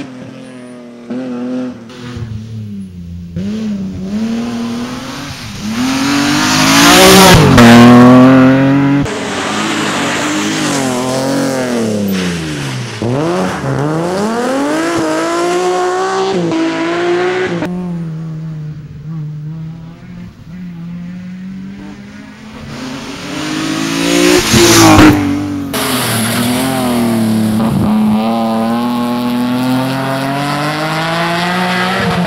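Rally cars at full throttle coming past one after another, each engine climbing in pitch through the gears and dropping as the car goes by. The two closest passes, about a quarter of the way in and near the end, are the loudest.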